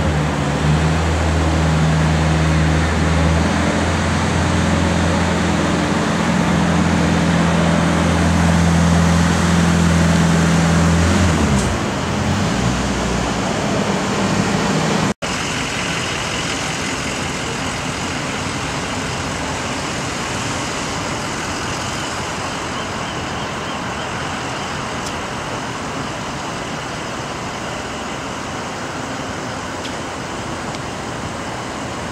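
Street traffic noise. A nearby vehicle's engine runs with a steady low hum for about the first eleven seconds, then drops away, leaving an even traffic rumble.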